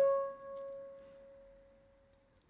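A single F-style mandolin note, fretted at the fourth fret of the second string, left ringing after the pick and fading away to silence over about two seconds.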